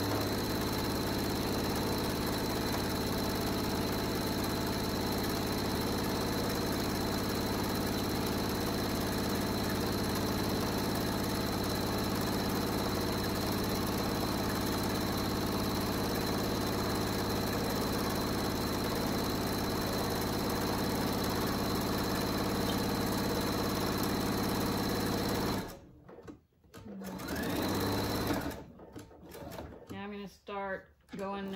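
Domestic sewing machine stitching a long seam down a folded cotton fabric dog leash, running steadily at an even speed for about 25 seconds before stopping suddenly. Near the end come two short stitching runs, the backstitch that locks the end of the seam.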